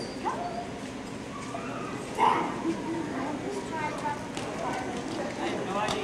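A dog barking once, loud and sharp, about two seconds in, over a steady murmur of voices echoing in a large hall.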